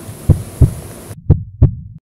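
Heartbeat sound effect: two lub-dub double beats, low thumps about a second apart. A faint background hiss cuts off abruptly a little past halfway.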